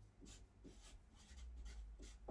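Faint scratching of a marker writing a word on a paper chart, in a few short strokes.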